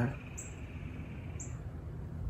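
Two short, high chirps from a small bird, about a second apart, over faint outdoor background noise.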